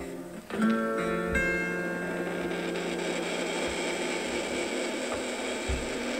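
Guitar music playing from a vinyl LP on a record player: chords plucked about half a second and again a second and a half in, ringing on over a steady hiss.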